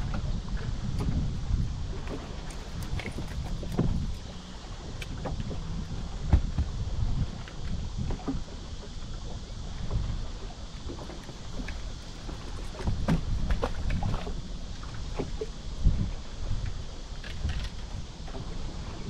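Wind buffeting the microphone in gusts, a rumble that rises and falls, with scattered small clicks and knocks.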